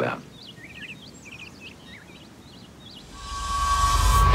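Faint small birds chirping, several short quick chirps, in quiet outdoor background. In the last second or so, background music swells up and grows louder.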